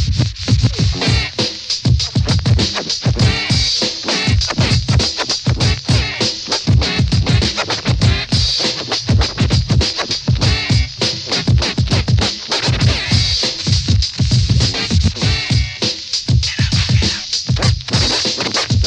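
Old-school hip hop instrumental with no vocals: a steady drum-machine beat under DJ turntable scratching.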